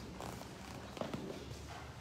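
Footsteps and shuffling of a group of people walking across a church floor, a few light taps over a low steady rumble.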